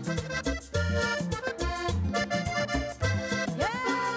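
Hohner Rey del Vallenato diatonic button accordion played live in a lively rhythmic tune, with chords in the right hand and regularly pulsing bass notes.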